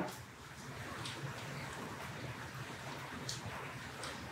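Faint steady hiss with a low hum and a couple of soft brief ticks, from hands handling braided fishing line and a hook while tying a snell knot.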